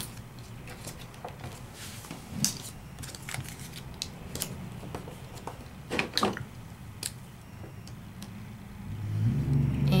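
Hands pressing sticky notes down onto a paper stencil and card on a cardboard-covered craft table: a few light taps and clicks over a low steady hum, which grows louder near the end.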